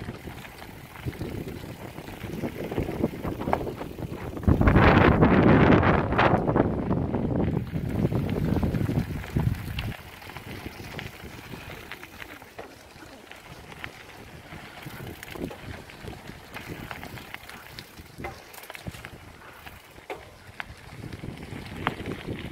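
Wind rushing over the microphone while cycling on a dirt track, with heavy buffeting for about five seconds starting around four seconds in, then a lighter rush with a few faint clicks.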